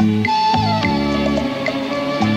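Latin ballroom dance music playing with a steady beat of bass and chord notes, and a melody line that slides down in pitch about half a second in.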